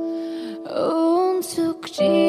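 Slow Indonesian pop ballad: a female voice sings a held note that then slides into the next phrase over soft accompaniment, with a couple of breathy sibilant sounds near the end.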